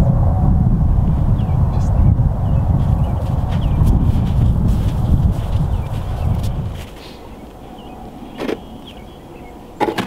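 Wind buffeting the microphone in an open field, a loud low rumble that drops away suddenly about two-thirds of the way through. Near the end come a couple of short knocks.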